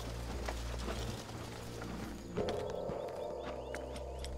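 Footsteps of a group of soldiers marching, a faint regular tread over a steady low background score; about two and a half seconds in, the music moves to a held mid-pitched note.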